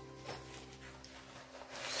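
Soft background music with steady held notes, over faint rustling of a padded nylon camera backpack being handled, with a louder rustle near the end.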